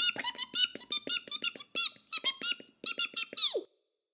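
Mouse-chatter sound effect: a rapid string of short, squeaky, high-pitched chirps, each rising and falling, stopping just before the end.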